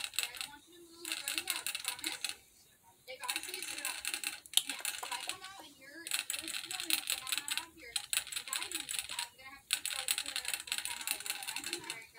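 A baby rabbit drinking from a hanging water bottle, its tongue working the ball valve in the metal sipper tube so that it clicks rapidly. The clicking comes in runs of one to three seconds with short pauses between them.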